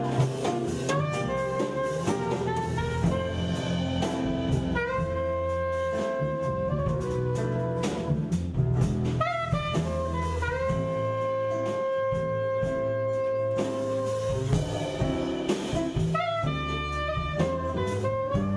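Soprano saxophone playing a jazz melody, holding long notes, the longest for about four seconds midway, over a live band with acoustic bass and drum kit.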